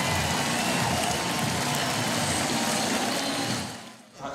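A steady, loud rushing noise with no clear pitch, which fades out near the end.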